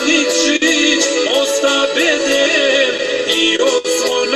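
A man singing a Montenegrin folk song over instrumental accompaniment, his voice bending and wavering between notes.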